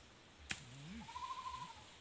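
A sharp knock about half a second in, followed by a single wavering bleat of under a second from a farm animal.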